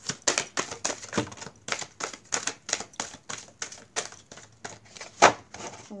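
An Angel Answers oracle card deck being shuffled by hand: a quick run of soft clicks and flicks, about five a second, with one louder snap about five seconds in.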